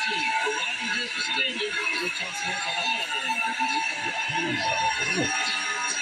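Television broadcast audio heard through a TV's speaker in a room: voices talking over a steady background music bed.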